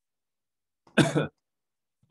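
A man's single short cough, a throat-clearing cough about a second in.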